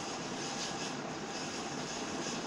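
Steady background noise with no speech, an even hiss-like hum that holds at the same level throughout.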